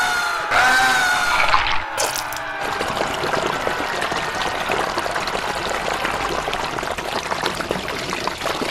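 Two short wavering pitched tones, then from about two seconds in a steady trickling, pouring water sound, dense with small crackles.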